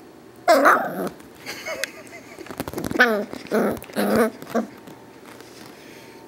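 Corgi mix (Pembroke and Cardigan Welsh Corgi) giving a string of short whines and grumbles that slide in pitch. The first, about half a second in, is the loudest, and shorter ones follow up to about four and a half seconds in. The dog sounds upset.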